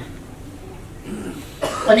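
A man's short cough after a pause in a speech, coming suddenly about a second and a half in, with his voice starting up again right after.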